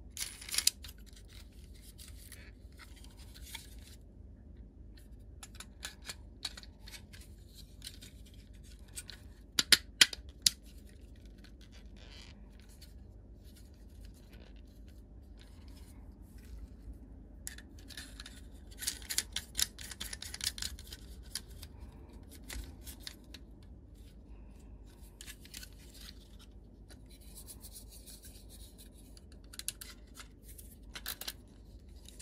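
Plastic panel-mount signal lamps and a plastic enclosure being handled and pushed together: scattered light clicks and knocks, a few sharp clicks about ten seconds in, and a stretch of rubbing and scraping around twenty seconds in.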